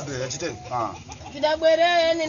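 A dove cooing in the background, with a person's voice over it.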